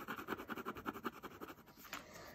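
Gel pen scribbling on paper with quick back-and-forth strokes as it colours in a small area, stopping shortly before the end as the pen lifts.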